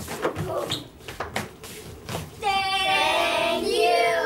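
Scuffing footsteps and knocks on a wooden stage as children move about, then, about two and a half seconds in, several children's voices rise together in high, drawn-out calls.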